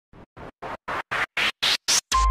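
Electronic build-up effect from a DJ remix intro: eight short bursts of noise, about four a second, each louder and brighter than the last.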